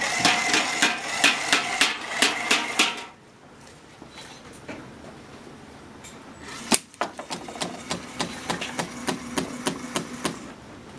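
Small motor-driven mechanism of a homemade LEGO WeDo chain-reaction machine clicking rhythmically, about three to four knocks a second over a steady whir, for roughly three seconds. After a pause, a sharp snap is followed by another run of regular knocks, about three a second.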